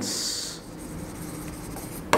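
A marker writing on a board: a short hiss at the start, then faint scratching as the letters are written.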